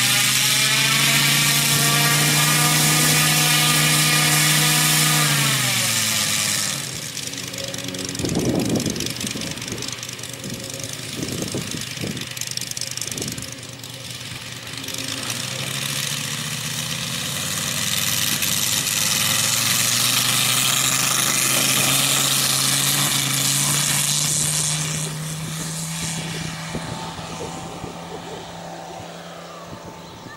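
The 250cc Moki five-cylinder radial engine of a large-scale RC P-47 model runs at high throttle, turning a four-bladed propeller. It is throttled back about six seconds in, then opened up again with a steadily rising note over several seconds for the takeoff run. It holds at full power, then fades near the end as the plane climbs away.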